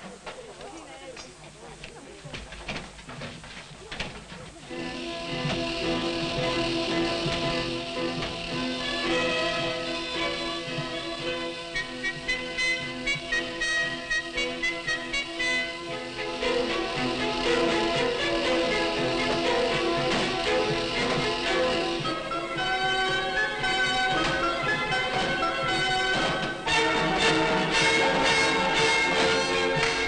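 Orchestra playing a rehearsal piece. It comes in about four and a half seconds in after a quieter stretch, plays sustained chords, and swells into a louder passage near the end.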